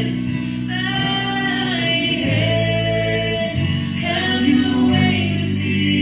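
Church worship band playing a slow gospel song: several voices, male and female, singing together over acoustic and electric guitars with held bass notes.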